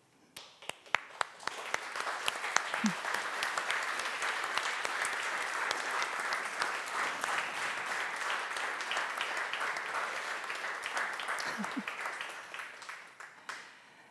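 Audience applauding in a hall: a few scattered claps that build within a couple of seconds into steady applause, which thins out and fades near the end.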